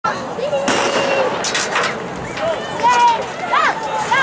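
A starter's pistol shot, a sharp bang, followed by spectators shouting and cheering.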